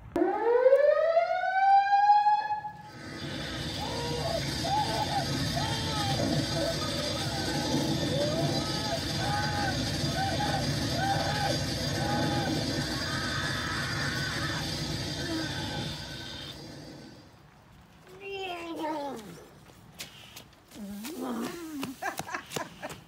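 Electronic Halloween prop sound effect: a loud rising whine lasting about two and a half seconds, then a long steady electrical buzz with wavering, voice-like sounds repeating over it for about fourteen seconds. Near the end come a few short wavering voice-like sounds.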